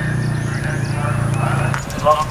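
A horse cantering on grass, its hoofbeats heard under a steady low hum that stops near the end, with birds chirping.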